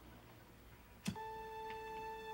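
Near silence, then a single sharp lighter click about halfway through. A steady held electronic music note starts right after it.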